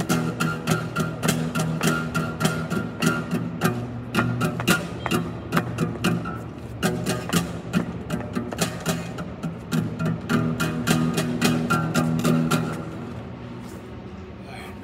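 Guitar strummed quickly in a steady rhythm, ringing chords under the strokes. The playing stops about a second before the end.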